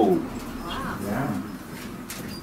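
A soft, low murmured voice, starting about half a second in and lasting under a second, much quieter than the reading around it.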